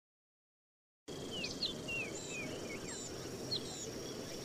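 Dead silence for about the first second, then forest ambience cuts in: many birds chirping in short rising and falling calls over a steady, high, thin insect buzz and a low background hiss.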